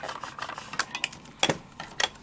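A round acrylic stamp block being pressed and tapped down onto paper through a clear plastic stamping template: a few short clicks and knocks, the loudest about a second and a half in.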